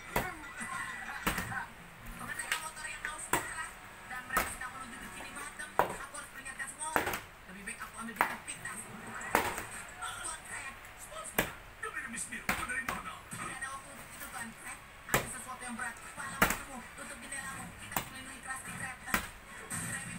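Small plastic water bottle being flipped and landing on a vinyl floor, a sharp knock roughly every second as it hits and mostly topples over; near the end it lands upright. Speech and music play faintly underneath.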